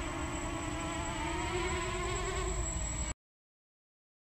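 Quadcopter's electric motors and propellers buzzing steadily as it hovers overhead on a 4S battery, the pitch rising a little in the middle. The sound cuts off suddenly about three seconds in.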